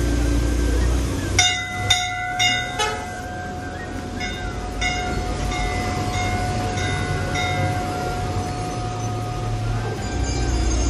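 Metal temple bells struck repeatedly. A quick run of four loud strikes about half a second apart comes about a second and a half in, followed by lighter strikes every half second or so. A steady ringing tone holds underneath.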